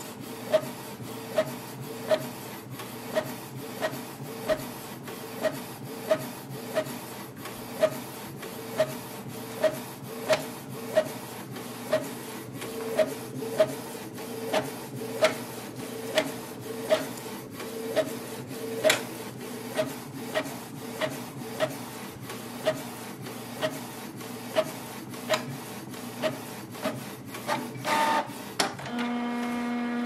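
Canon Pixma TR4720 inkjet printer printing a two-sided copy: the print head carriage sweeps back and forth with a sharp click about every two-thirds of a second over the steady whirr of the paper-feed mechanism. Near the end the clicking stops and a steady motor tone sounds briefly.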